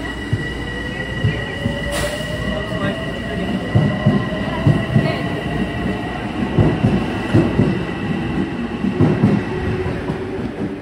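Metro-North M7A electric multiple-unit train pulling out and gathering speed past the platform. A high electric whine holds steady while a lower tone climbs slowly. From about the middle, wheels clack more and more loudly over the rail joints.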